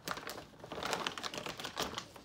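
Loose wild bird seed rattling as a bowl is scooped full inside a large plastic bag of seed, heard as a dense run of small clicks with the plastic bag crinkling.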